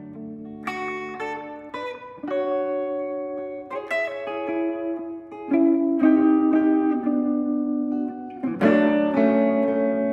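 Electric guitar played through an amp, an instrumental passage of picked chords and single notes that ring on, with louder strummed chords about half a second in, around four seconds in and near nine seconds.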